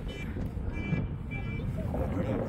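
A vehicle's reversing alarm beeping three times, short high beeps evenly spaced about every 0.6 s, over low wind rumble on the microphone.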